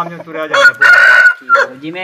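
Aseel rooster crowing once, loud and close, for just under a second, with men's voices before and after.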